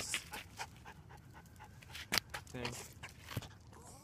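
A dog panting in quick, even breaths close to the microphone, with a couple of sharp clicks partway through.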